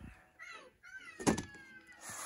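Plastic VHS clamshell case being handled: a light knock at the start, squeaky creaks of the plastic sliding down in pitch, and one sharp clack a little past halfway.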